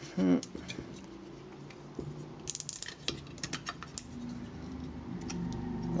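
Hard plastic parts of a transforming toy figure clicking and rattling as they are folded and snapped into place by hand, with a flurry of small quick clicks about halfway through.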